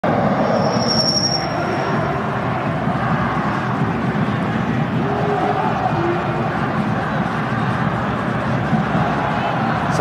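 Football stadium crowd noise: a dense, continuous roar of many voices from the stands, with a short high-pitched whistle about a second in.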